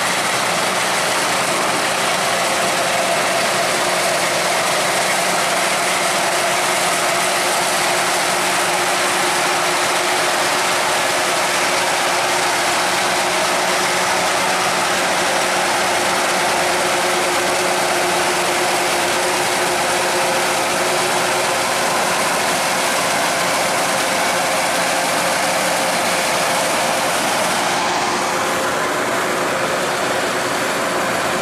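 Kubota DC-108X rice combine harvester running steadily while cutting and threshing rice: its Kubota 3800 diesel engine under working load together with the harvesting machinery, loud and unbroken. The sound shifts slightly near the end.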